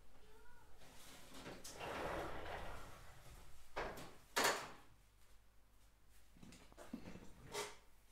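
A door being closed: a scraping slide for about two seconds, then one sharp knock about four and a half seconds in.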